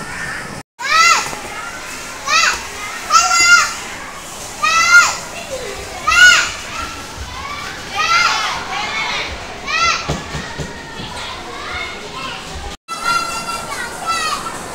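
Children's high-pitched shrieks and squeals of play, a cry every second or so with the pitch rising and falling, over a steady background of children's chatter. The sound drops out twice for an instant, once near the start and once near the end.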